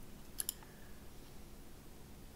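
A computer mouse button clicked: two quick clicks close together about half a second in, over faint room tone.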